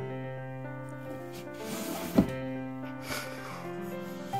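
Background keyboard music with long held notes. About two seconds in, a short rustle and one sharp thump, with a smaller rustle a second later, as a Bengal cat squeezes between fabric storage boxes.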